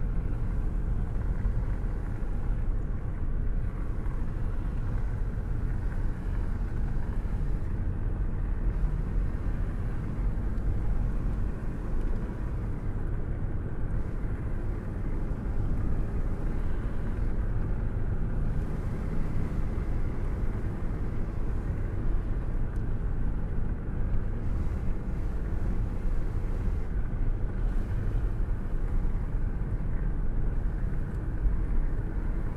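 A car being driven at a steady pace: an even, low rumble of engine and tyre noise with no sudden events.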